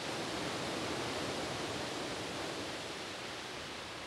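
Water rushing out of the Atatürk Dam's outlet gates into churning white water, a steady rushing that eases slightly near the end.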